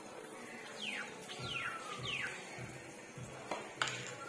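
Flat metal spatula working a little hot oil in a steel wok, with two sharp metal knocks near the end. Over it come three high whistles sliding downward, one after another, and one held whistled note.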